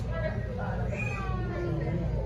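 A high-pitched, whiny-sounding voice with pitch that bends and falls about a second in, over a steady low hum of background noise.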